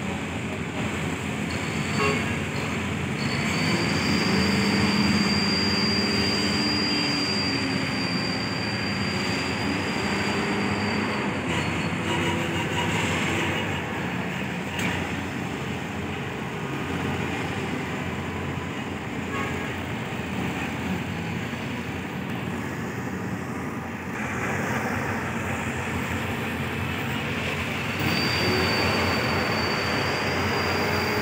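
Steady din of cargo-handling machinery at work, cranes and engines running together. A thin high whine sounds from a few seconds in to about a third of the way through, and again near the end.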